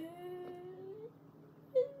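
A girl's voice holding one long sung note for about a second, rising slightly, then a short vocal sound near the end.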